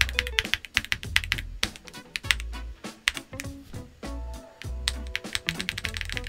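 Keys being typed in a quick run on a Cidoo V65, an aluminium gasket-mount 65% mechanical keyboard with linear switches, each press a short clack. Background music with a steady bass line plays underneath.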